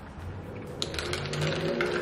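Ice cubes clicking against a glass mason jar of iced coffee as a straw stirs it: a quick, irregular run of light clicks starting just under a second in.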